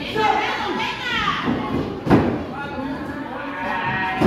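Spectators calling and shouting across the ring. About halfway through comes one sharp, loud thud: a wrestler's body hitting the ring mat.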